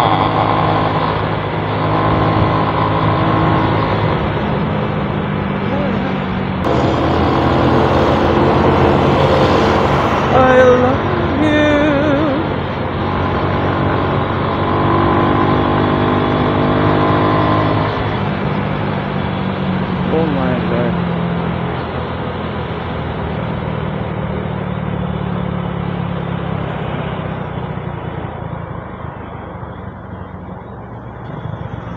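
Honda XRM 110 underbone motorcycle's single-cylinder engine running as it is ridden along a road, with wind and road noise. The engine note changes a few times as the speed changes.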